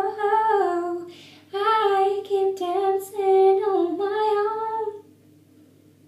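A woman singing solo in long held notes, with a short break about a second in; the singing stops about five seconds in.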